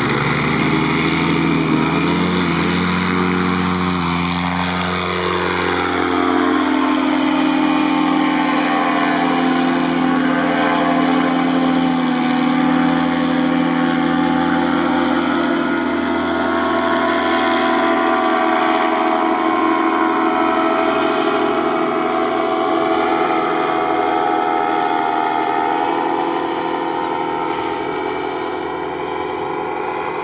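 Paramotor engine and propeller running at full power through the takeoff and climb, its pitch dropping a few seconds in as it pulls away, then holding steady and fading slightly near the end.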